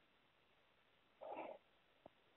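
Near silence, broken by one short faint sound about a second and a quarter in.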